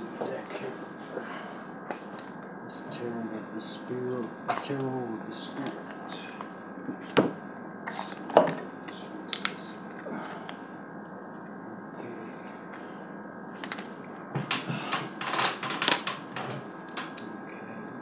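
A deck of tarot cards being shuffled and handled: scattered soft clicks and slaps of cards, busiest near the end, with quiet mumbled speech a few seconds in.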